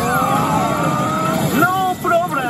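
Kagami pachislot machine sound effects during a reel-spin cut-in: electronic tones rising steadily while one sweeps downward, then short quick chirping glides near the end.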